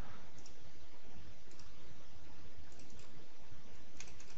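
Steady low hum and hiss of background room noise, with a few faint computer mouse clicks.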